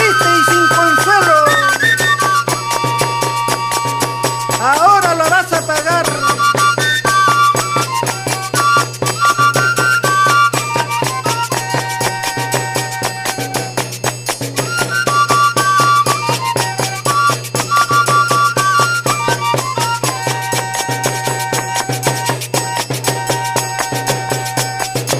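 Northern Peruvian folk music: a mostly instrumental passage with a melody of held, stepping notes over a steady bass line and an even percussion beat with a rattle.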